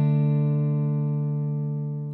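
Closing music: a final guitar chord left to ring, slowly fading away.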